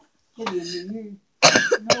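A child's voice: a drawn-out vocal sound with a wavering pitch about half a second in, then a short, loud, rough outburst near the end that runs into laughter.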